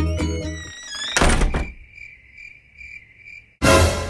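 Music fades out, and about a second in a door slams with a loud thunk. Steady cricket chirping follows, about two and a half chirps a second. A second loud burst of noise cuts in near the end.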